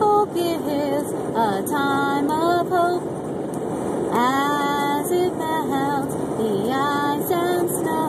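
A woman singing unaccompanied inside a moving car, with steady road noise underneath her voice.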